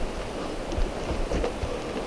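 Walking noise on a dirt forest trail: scattered footsteps and gear rustle over a steady hiss, with low rumble from wind on the microphone.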